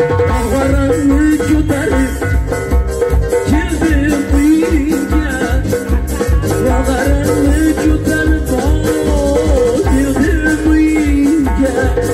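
Live band dance music: an electronic drum kit keeping a steady pulsing beat under a keyboard lead melody that bends and slides in pitch.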